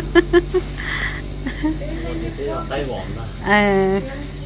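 A steady high-pitched insect drone, typical of crickets, running throughout, with a few sharp clicks near the start and a person's voice briefly near the end.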